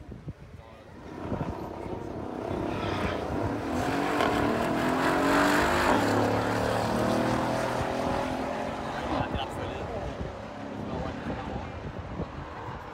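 Drag-racing cars accelerating hard down a quarter-mile strip. The engine note rises steadily in pitch, swells to its loudest mid-way, then fades as the cars pull away.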